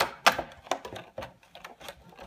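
Clear plastic blister packaging being handled, crackling and clicking. There is a sharp crack right at the start and another about a quarter second in, then scattered lighter clicks.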